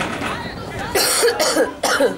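A person close to the microphone coughing twice, about a second in and again near the end, with voices around.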